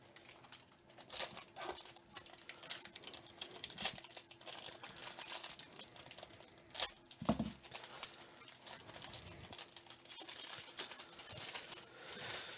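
Foil wrapper of a baseball card pack crinkling and tearing as it is opened by hand, in quiet irregular crackles with a few louder ones, the loudest about seven seconds in.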